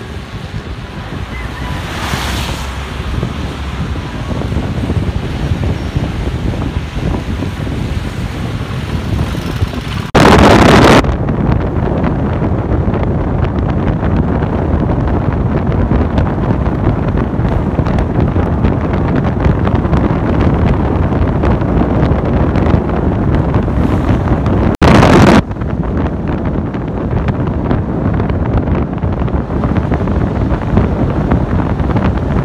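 Wind rushing over a phone microphone while travelling along a road, with a steady low rumble of vehicle and road noise. Two brief, much louder bursts of rushing come about ten seconds in and again about twenty-five seconds in.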